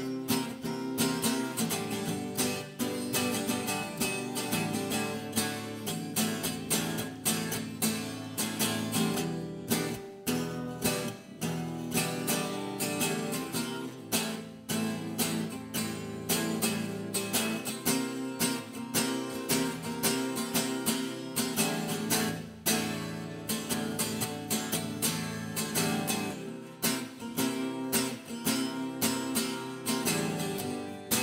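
Acoustic guitar strummed in a steady rhythm, an instrumental passage with no singing.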